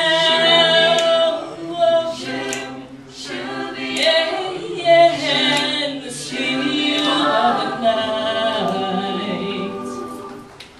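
Mixed men's and women's a cappella group singing with no instruments, in held chords with moving vocal lines above; the sound tapers off toward the end as the song closes.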